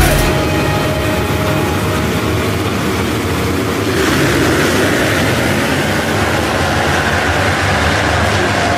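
A full gate of motocross bikes running and revving together. About four seconds in the sound gets louder and higher-pitched.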